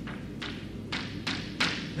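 Chalk striking and scraping on a chalkboard while symbols are written: four short, sharp taps in quick succession.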